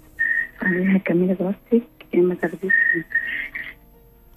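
A woman's voice over a telephone line, speaking indistinctly, with a high steady whistle on the line that comes and goes over it.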